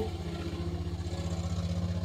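Loud motor-vehicle engine running with a low, steady drone and a fast, even pulse.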